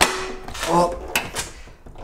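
Car bonnet being opened and lifted: a sharp metal clunk with a brief ringing tail as it comes up, then two quick clicks about a second later.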